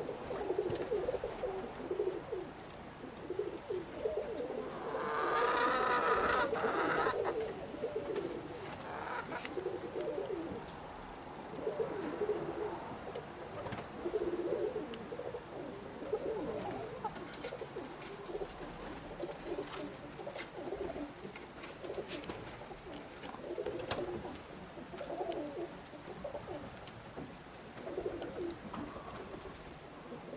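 Domestic pigeons cooing, low calls repeating every second or two. About five seconds in, a louder, higher-pitched sound rises over the cooing for about two seconds.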